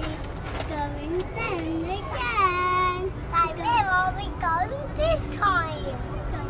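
A young child's high voice vocalising in a sing-song way, with gliding and held notes, over a steady low rumble.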